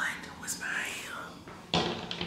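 A person whispering softly, with a sudden louder sound near the end.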